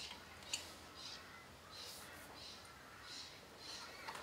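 Faint clicks and scrapes of a steel spanner on the milling vise's hold-down nuts as they are nipped up tight, with one sharper click about half a second in.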